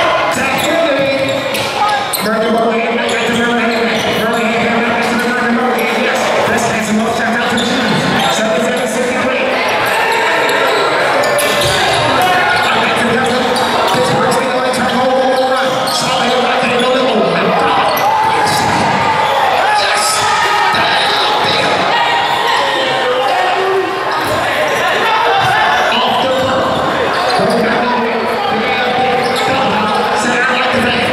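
Basketball bouncing on a hardwood gym floor during play, amid many voices of players and spectators echoing in a large hall.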